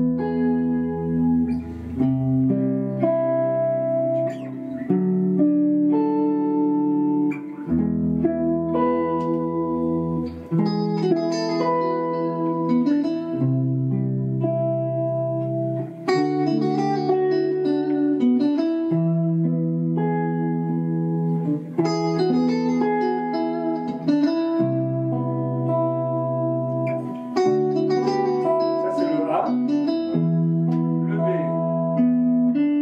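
Three electric guitars playing a smooth jazz tune together: one states the melody in single notes while the other two accompany with sustained chords over a three-chord progression of E major, C major and D major, changing every few seconds.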